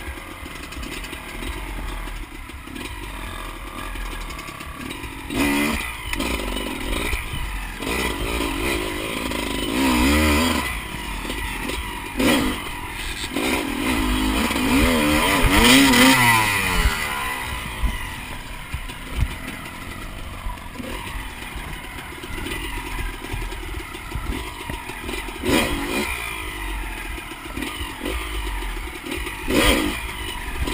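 Onboard sound of a GasGas 250 four-stroke enduro bike's single-cylinder engine, revved up and down in bursts while picking through a muddy, rutted climb, with the longest rising-then-falling rev about halfway through. Sharp knocks and clatter from the bike over rough ground come and go.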